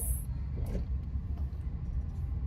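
Steady low rumble of a car's engine and road noise, heard from inside the cabin as it drives.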